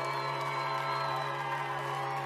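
A live band's quiet introduction: one steady sustained chord over a low held bass note, with no beat.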